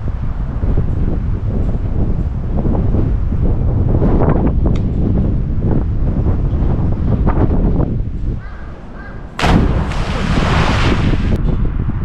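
Wind buffeting the microphone: a loud, uneven low rumble. About nine and a half seconds in, a louder hissing rush lasts about two seconds.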